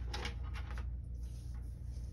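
Cardstock and crafting tools being handled: a few soft clicks and rustles in the first second, then only a steady low hum.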